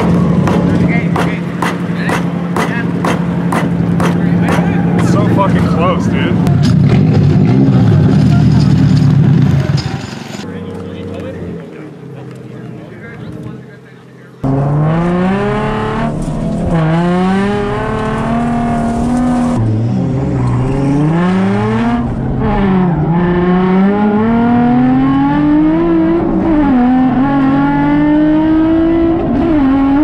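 A portable tire inflator running with a steady hum and regular ticking as it pumps up a car's rear tire, stopping about ten seconds in. Then, heard inside the cabin, a Nissan 350Z's engine revving up and down over and over while it drifts.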